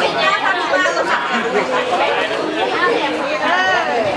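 Children chattering over one another, their voices overlapping and high-pitched.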